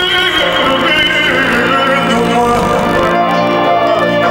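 Live Banat folk band music in the slow 'ascultări' listening style, loud and steady. An ornamented melody line slides down in pitch in the first second or so, over a held accompaniment.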